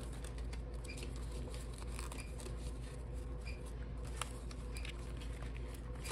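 Paper banknotes being handled and flicked through a stack, with light rustling and crinkling and a few faint clicks over a low steady hum.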